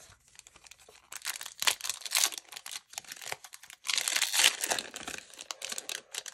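A trading card pack's wrapper being torn open and crinkled by hand, in two spells of crackling about a second in and again about four seconds in.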